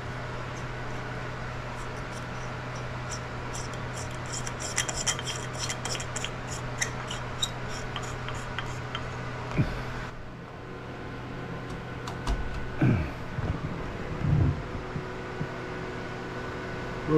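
A light bulb's threaded metal base being screwed into a keyless lamp holder: a run of small scraping ticks and clicks over several seconds, with a steady low hum beneath.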